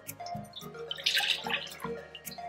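Shoyu (soy sauce) poured from a bowl into a mixing bowl, a short splashing pour about a second in, over background music.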